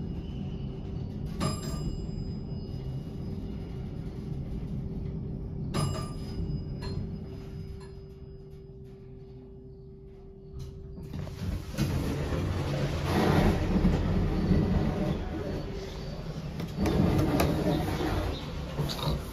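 Montgomery hydraulic elevator car travelling down with a steady hum and a held tone, with a couple of brief ticks along the way. The hum fades about eleven seconds in as the car stops, and a louder rush of noise follows as the door opens.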